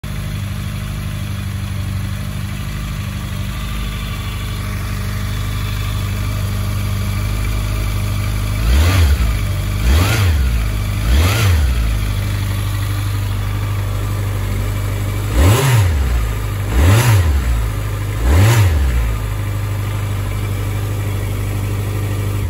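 A 2016 Honda CB1100's air-cooled inline-four engine idling steadily, blipped six times on the throttle in two sets of three. Each rev rises and falls back to idle within about a second.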